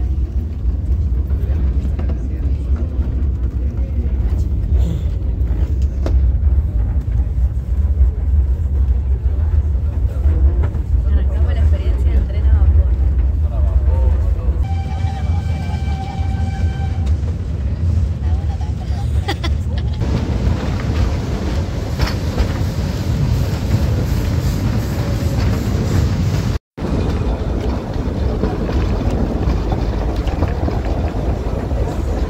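Narrow-gauge steam train under way, heard from aboard as a heavy low rumble; its steam whistle sounds for about two seconds midway. Near two-thirds through the sound changes abruptly to a lighter, noisier rush of travel.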